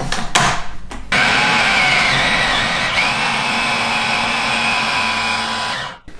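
A Philips food processor's motor blending a thick paste of dates, hazelnuts and cacao with almond milk, a steady loud run with a whine. It starts about a second in, after a couple of short knocks, and cuts off just before the end.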